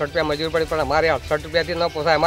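A man talking steadily in Gujarati, with faint background music underneath.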